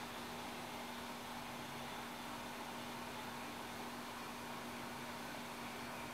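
Steady low hiss with a faint, even hum: background room tone with no distinct events.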